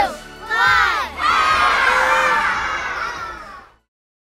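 A group of children's voices shouting the end of a countdown, then cheering and yelling together. The cheer runs for about two and a half seconds and fades out shortly before the end.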